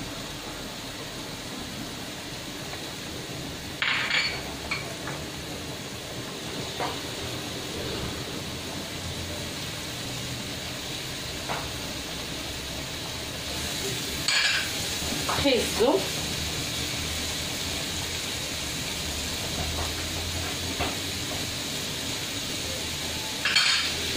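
Chopped onion and peppers sizzling steadily in olive oil in a non-stick frying pan, with a few short knocks and scrapes of a wooden spoon and a plastic scoop against the pan as vegetables are tipped in and stirred, about four seconds in and again around fifteen seconds.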